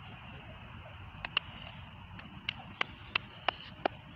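A run of short, sharp clicks, a couple about a second in and then about three a second through the second half, over a faint steady outdoor background.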